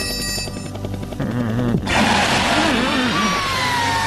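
Cartoon sound effects: background music, then a short warbling cartoon voice. About two seconds in comes a sudden loud whoosh as a flying triangle shape zooms off, and near the end a long, slowly falling whistle.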